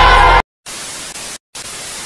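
Loud meme music cuts off abruptly about half a second in, followed by two bursts of TV static hiss, each under a second long, with a brief gap between them.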